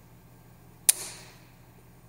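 A single sharp plastic snap about a second in, with a brief crackling tail, from a plastic bottle-holder clamp being forced around a motorcycle frame tube: the clamp's bracket cracking.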